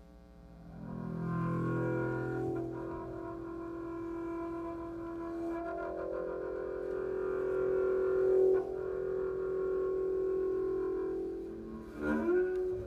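Acoustic double bass played with a bow: after a quiet first second, long sustained bowed notes with rich overtones. Low notes come first, then a higher note is drawn out and held until near the end.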